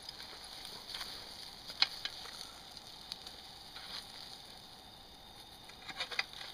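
Faint steady hiss of pork steaks sizzling on a wire grate over campfire coals, with a few sharp clicks, the loudest about two seconds in.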